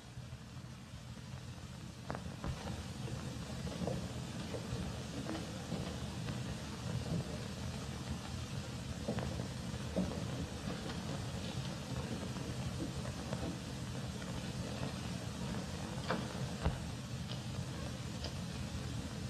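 Steady hiss and low hum of an old optical film soundtrack, with scattered clicks and crackles through it.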